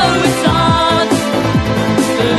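Electronic dance music in a Valencian 'Ruta Destroyer' DJ mix: a kick drum thumping about twice a second under sustained synth chords and a melody.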